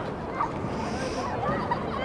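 Outdoor background ambience: a steady low rumble with short, indistinct calls scattered through it.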